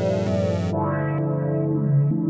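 Playback of a drumless trap beat in progress: layered Omnisphere synthesizer parts playing sustained chords and a melody. There is a short burst of bright hiss over roughly the first half-second.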